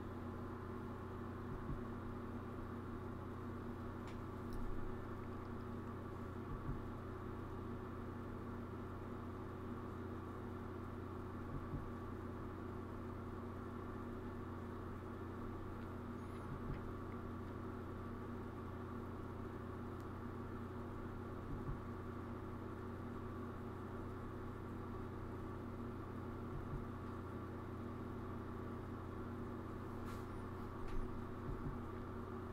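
Steady low electrical hum, with a faint soft tick about every five seconds.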